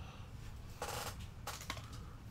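Trading cards being handled: a short crackling rustle a little under a second in, then a few light clicks.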